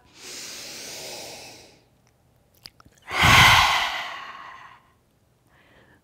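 A woman's slow, steady inhale, then, about three seconds in, a loud, forceful open-mouthed exhale that fades away: the lion's breath of yoga.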